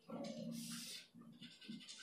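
Whiteboard marker drawn across the board in one stroke: a faint, steady-pitched drag lasting about a second.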